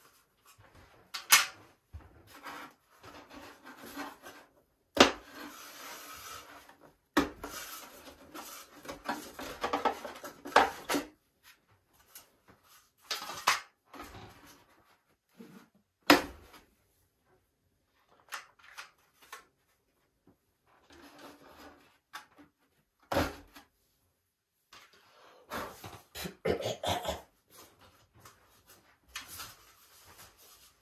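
Balsa model-aircraft wing parts being handled: several sharp wooden knocks and stretches of rubbing and scraping as a flap or aileron is worked off its pin hinges and set aside.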